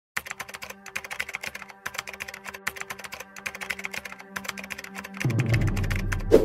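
Rapid, irregular keyboard-typing clicks, used as a sound effect for a title reveal, over a steady low hum. A few seconds before the end a deep, loud bass swell comes in.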